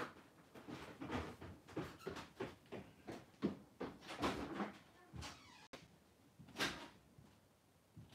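Faint off-camera knocking and clattering of cupboards and doors, irregular throughout, with a louder knock about six and a half seconds in.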